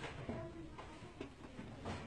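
Footsteps going down steep stone stairs, a few uneven steps roughly half a second apart.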